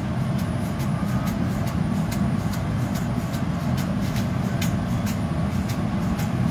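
Steady low roar of a glass studio's gas-fired furnace, glory hole and fans, with irregular sharp clicks and crackles, several a second, as a hot glass gather is rolled through a metal bowl of crushed colored glass frit.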